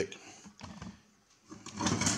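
Handling noise from the electrosurgical unit's metal front panel being lifted on its steel case, mostly quiet, with a brief louder scrape and clatter near the end.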